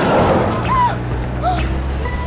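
A man shouting briefly over the low drone of a van's engine as it drives past.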